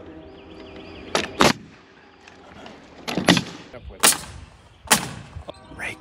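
Nails being driven into a wooden fascia board at the roof edge: five sharp impacts, two close together about a second in, then roughly one a second after.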